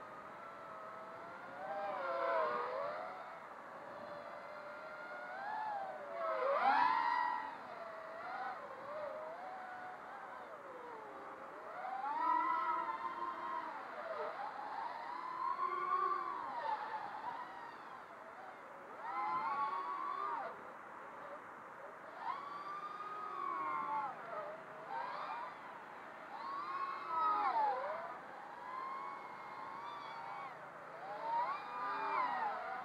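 Eachine Wizard X220 racing quadcopter flying on a 4S battery: its four brushless motors and three-blade 5-inch props whine, the pitch swooping up and down with repeated bursts of throttle. The loudest swell comes about seven seconds in.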